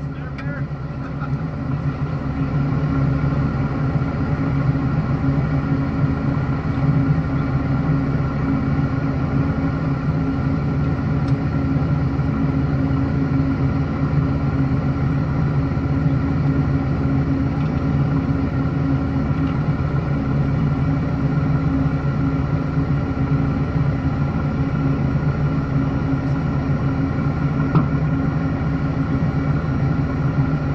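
Off-road 4x4's engine running steadily at low speed as the vehicle crawls up a rocky trail, a continuous low hum that grows louder over the first few seconds and then holds.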